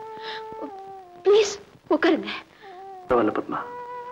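Film soundtrack: a held, slightly wavering musical note that steps down in pitch about a second in and comes back near the end, with short breathy voice sounds between.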